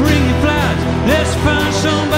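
Live band playing a song, with a lead vocal melody sung over guitars, drums and keyboards.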